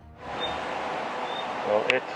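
Steady outdoor background hiss coming in just after music cuts out, with two brief high chirps, a sharp click near the end and a man's voice starting.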